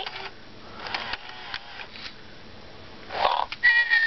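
FurReal Friends Squawkers McCaw animatronic parrot toy: faint clicking from its moving mechanism, then near the end a short harsh squawk followed by a steady high whistle.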